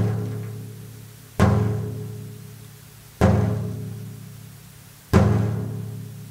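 Meinl Sonic Energy wave drum (a bead-filled frame drum) played with the thumb for the bass 'dum' sound. There are three single strokes nearly two seconds apart, each a low tone that rings and slowly fades, and the ring of an earlier stroke dies away at the start.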